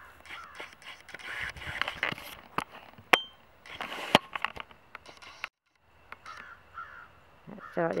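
Handling noise from a handheld camera being swung about: rustling with scattered sharp clicks, two of them loud about three and four seconds in. The sound cuts out briefly about halfway through.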